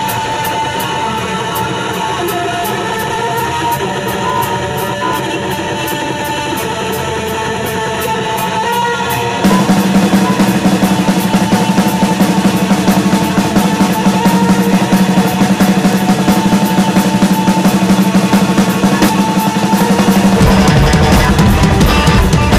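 Live heavy rock band playing with electric guitar and electronics over a steady ticking beat. About nine seconds in the full band comes in much louder, and a deep bass joins near the end.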